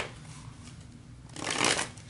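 Tarot cards being handled, with a short rustle of cards sliding against each other about a second and a half in.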